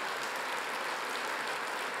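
Large audience applauding steadily, a dense even clapping.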